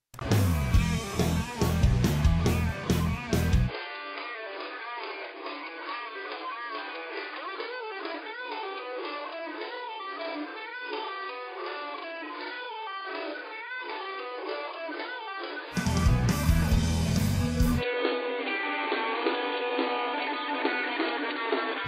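A recorded rock track with electric guitar playing back through JamVOX guitar-amp simulator software. About four seconds in, GXT guitar extraction strips out the bass and the top, leaving the electric guitar part soloed and thin, slowed with the tempo control. About sixteen seconds in the full band mix returns for two seconds, then the guitar is extracted again.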